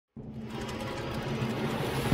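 Synthetic intro sound effect for an animated logo: a dense, rapidly fluttering noise that starts abruptly and swells steadily louder.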